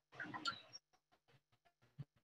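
Mostly near silence: a brief faint murmur at the start, then a run of very faint, light clicks.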